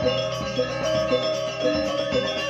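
Balinese gamelan gong ensemble playing: bronze metallophones and gongs ringing together, many tones held over an even pulse of strokes about two a second.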